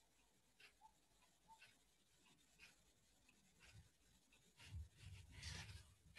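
Near silence: room tone with a few faint small clicks, and a soft low rustle in the last second and a half.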